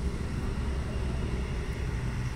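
Steady low outdoor rumble with no distinct events, the kind left by distant traffic or wind on the microphone.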